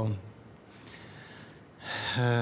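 A man's voice finishes a word at the start, followed by a quiet pause with a faint breath. Near the end, a sudden breathy intake runs straight into a loud, short voiced exclamation.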